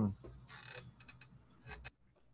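Faint small clicks and short rustles: a quick run of four or five sharp clicks just after a second in, between two brief hissy rustling noises.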